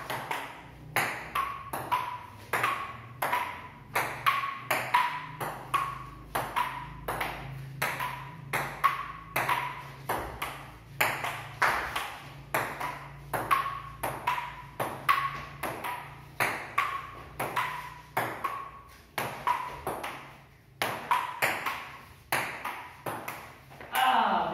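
A long table tennis rally: the celluloid ball clicks off the rubber paddles and bounces on the table top in an even run of sharp, pinging taps, about two a second, without a break.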